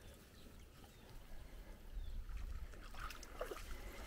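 Faint sloshing of a dog wading through a shallow muddy pool, over a low rumble that swells in the middle.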